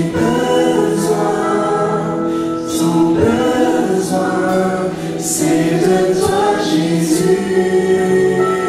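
A small vocal group singing a French gospel worship song in harmony, a male lead voice with backing singers, over acoustic guitar.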